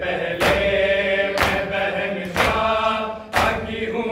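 A group of men chanting a Shia nauha lament in unison while beating their chests together in matam. The chest slaps land in time with the chant, four strikes about a second apart.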